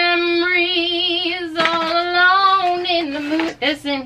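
A woman singing two long held notes with vibrato in a playful voice, the second starting about a second and a half in.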